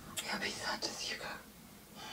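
A person whispering a few soft, breathy words for about the first second.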